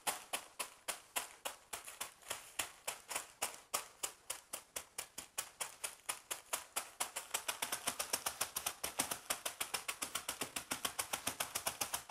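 Ritz crackers being crushed by hand inside a zip-top plastic bag on a countertop: a rapid, even run of crunching taps that quickens toward the end.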